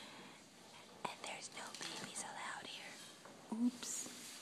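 Soft, whispery vocal sounds, followed by a short voiced sound shortly before the end.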